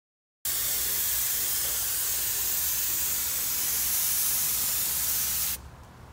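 Compressed-air gravity-feed paint spray gun spraying paint in one continuous steady hiss, cutting off suddenly about five and a half seconds in as the trigger is released.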